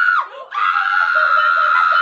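A woman's high-pitched scream, held at one steady pitch, in two stretches: one ending just after the start and a longer one from about half a second in, in a playful, laughing mood.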